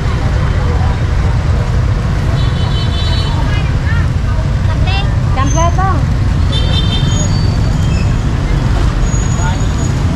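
Busy roadside street ambience: a steady rumble of road traffic and motorbikes, with short horn toots about two and a half seconds in and again near seven seconds, and people talking in the background.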